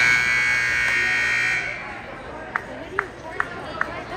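Gymnasium scoreboard buzzer sounding as the period clock hits zero: a loud, steady tone that cuts off about a second and a half in. Four short, sharp sounds follow, evenly spaced, over background chatter.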